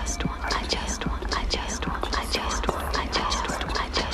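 Many people's whispering voices layered over one another into a dense, continuous murmur of breathy syllables, as vocal ambient music, over a low steady hum.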